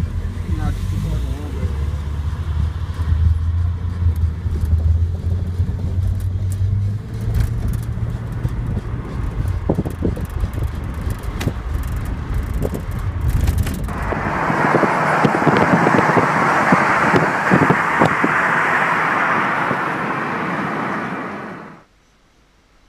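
Car engine and road rumble heard inside the cabin while driving, with scattered clicks. About two-thirds of the way in, the low rumble gives way to a loud, even rush of noise that stops abruptly just before the end.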